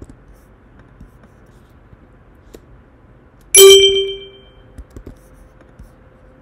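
A single loud, bell-like ding about three and a half seconds in, its ringing fading over about a second; a few faint clicks before and after.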